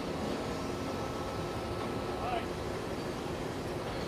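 Steady machinery noise on an offshore drilling rig's drill floor, with faint crew voices and a brief small sound about two seconds in.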